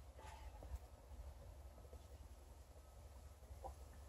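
Near silence: a steady low hum with a few faint, brief clicks.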